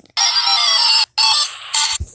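Audio of a YouTube intro video starting up, played through a phone's speaker: a shrill, harsh sound in three bursts, the first nearly a second long, with two shorter ones after it.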